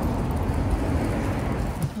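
Steady street noise with a low rumble of road traffic on a city sidewalk.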